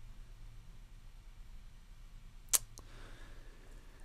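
Quiet room tone with a low steady hum, broken by a single sharp click about two and a half seconds in, followed by a faint soft rustle.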